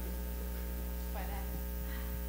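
Steady electrical mains hum in the audio feed, a low constant drone with no change over the stretch.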